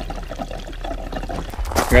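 Gasoline pouring from a red plastic gas can into a pickup truck's fuel filler, a steady pour, with a brief knock near the end.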